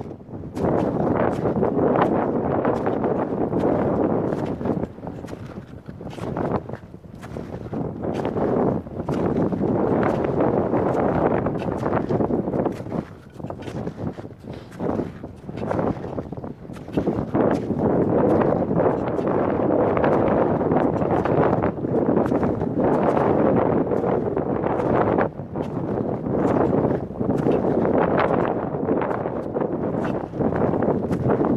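Wind buffeting a helmet-mounted camera's microphone in gusts that swell and drop, with scattered small clicks.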